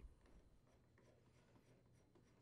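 Near silence, with faint light ticks and rubbing as a brass flare nut is threaded onto a gas valve fitting by hand.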